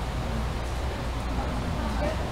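Meeting-room background: a steady low hum with faint, distant voices murmuring.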